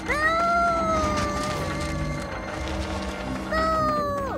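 A cartoon character's long, high wordless cry, held about two and a half seconds and sagging slightly in pitch, then a second shorter cry near the end that drops away, over background music.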